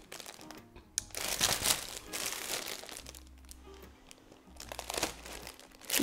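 Clear plastic packaging sleeve crinkling in several short spells as it is handled. Faint steady background music lies underneath.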